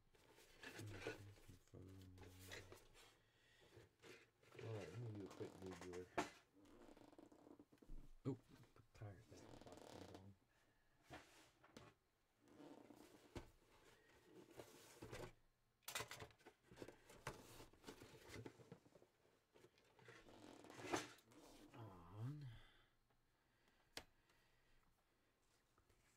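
Faint, muffled talking, too low to make out, with a few sharp clicks scattered through it.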